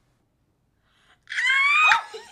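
Near silence for about a second, then a woman's loud, high-pitched shriek of delight, held until the end.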